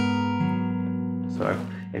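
Steel-string acoustic guitar in open D tuning: an E minor 9 chord fingered without the thumb over the neck, struck once and left to ring, with another note added about half a second in. The chord fades slowly.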